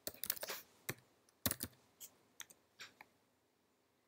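Faint computer keyboard typing: a quick run of keystrokes at the start, then single keypresses every half second or so.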